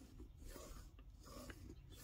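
Faint scratching of a friction pen drawn along a ruler's edge across fabric, marking a stitching line.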